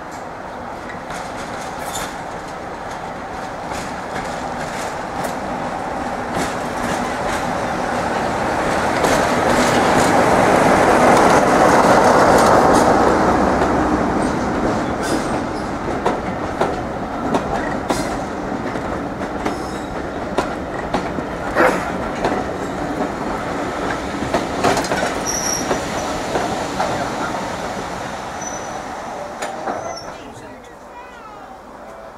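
Class 47 diesel locomotive's Sulzer 12-cylinder engine running as it approaches, loudest as it passes close by about twelve seconds in, then fading. Its coaches follow, rolling past with clicking wheels over rail joints, and a thin, high squeal near the end as the train slows into the station.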